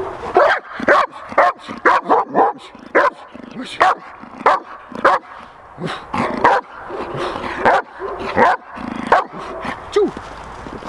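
A dog barking repeatedly at the helper, about two loud, sharp barks a second, in a Schutzhund bark-and-hold: the dog is barking to demand the prey (ball or sleeve) that the helper is blocking.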